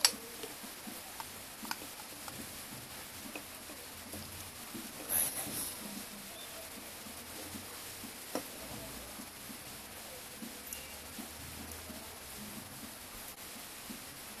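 Handling noises from a blow-off valve being assembled by hand: a sharp click at the start, a brief rustle about five seconds in, a tap a little after eight seconds, and light ticks and rustles between.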